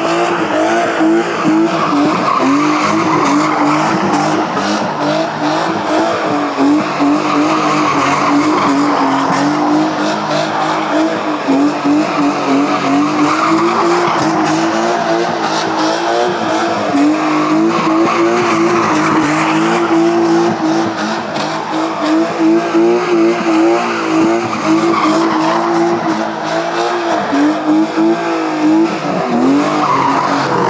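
BMW E36 drift car sliding in continuous circles around a cone. The engine is held high in the revs with a steady, slightly wavering note, and the tyres are skidding over the tarmac throughout.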